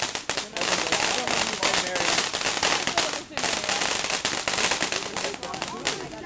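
Consumer fireworks going off in a dense run of rapid crackling pops, easing briefly twice and stopping just before the end.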